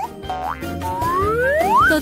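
Background music with a comic sliding-whistle sound effect: a short rising whistle, then a longer one gliding upward for about a second.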